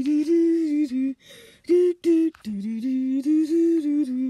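A person humming a tune unaccompanied: a run of held notes stepping up and down, with short breaks between phrases.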